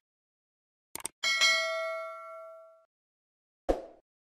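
Subscribe-button animation sound effects: two quick mouse clicks about a second in, then a bell ding that rings out and fades over about a second and a half, and a short swoosh near the end.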